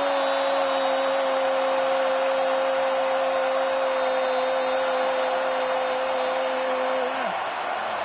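A male football commentator's goal cry, a single "goool" held on one steady pitch for about seven seconds before it drops away, over a stadium crowd cheering a goal.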